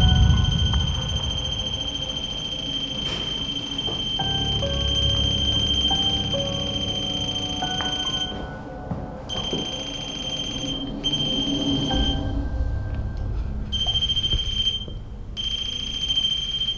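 A motion-sensor music box plays a simple tinkling melody, set off by movement near it. Over it runs a high, steady electronic alarm tone, typical of a REM pod triggered by motion, which cuts out briefly several times in the second half.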